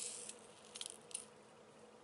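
Faint swish of a folded paper scoop sliding over a bead mat, then two short faint scrapes about a second in, as loose glass seed beads are gathered up.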